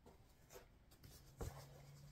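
Faint rustling of cross-stitch projects being handled, with a soft bump about one and a half seconds in.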